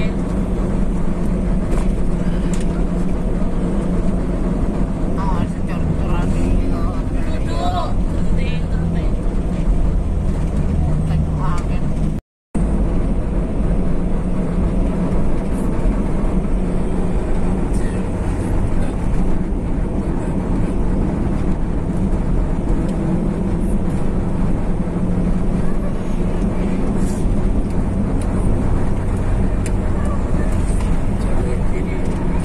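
Steady engine and road noise inside a moving vehicle's cabin at highway speed, with a low engine hum. The sound cuts out completely for a moment about twelve seconds in.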